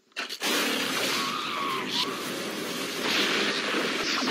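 Film sound effect of an explosion in jungle foliage: after a brief silence a blast cuts in about half a second in and runs on as a loud, sustained rush of noise, with a thin falling whine near two seconds in.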